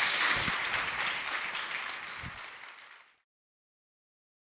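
An audience applauding, the clapping fading out and ending about three seconds in.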